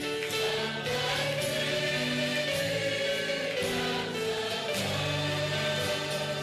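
Christian worship music with a choir singing slow, held chords.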